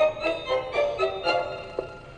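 Instrumental opening of a children's film theme song, played back from a small handheld device: a quick run of bright, separate notes, about four a second, growing fainter toward the end.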